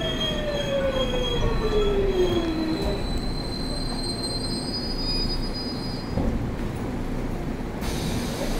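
Seoul Metro Line 8 subway train running: a steady rumble with an electric motor whine falling in pitch over the first few seconds as the train slows, and a thin high tone rising in the middle.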